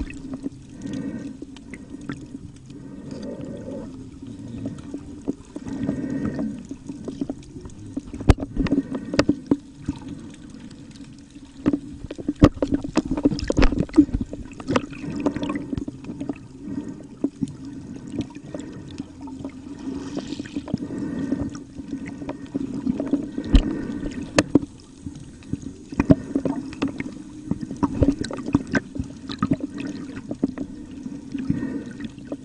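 Water heard with the phone swimming among sea turtles, most likely underwater: a steady low hum with many scattered crackling clicks.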